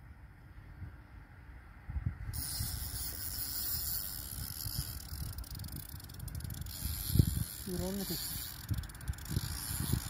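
Spinning fishing reel being cranked to retrieve the line, a steady whirring hiss that starts about two seconds in, over wind rumble on the microphone. A short vocal sound comes near the eighth second.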